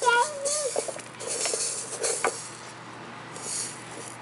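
A baby's short wavering vocal sound at the start, then a few soft bursts of plastic egg-shaker rattle and a light tap about two seconds in.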